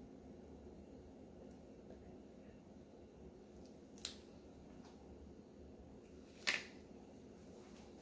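Quiet room with a low steady hum, broken by two short clicks, one about four seconds in and a louder one about six and a half seconds in.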